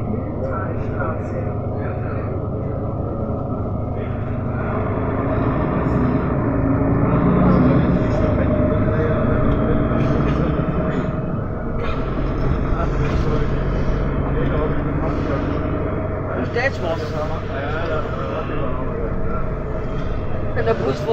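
City bus engine and road noise heard from inside the passenger cabin while it drives, a steady rumble that swells for a few seconds midway.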